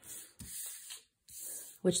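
Playing cards being swept together and slid across a wooden tabletop by hand: three soft rustling scrapes.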